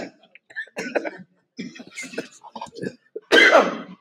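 A man's stifled laughter into his fist: short breathy chuckles broken by pauses, with a louder burst about three seconds in.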